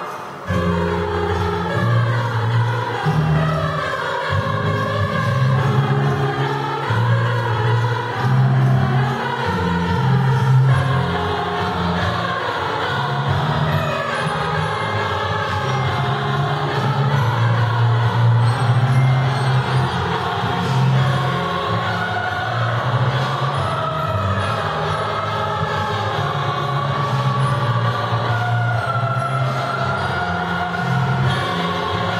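Children's choir singing in several voice parts, the lines moving up and down in long phrases. A brief break comes at the very start before the singing resumes.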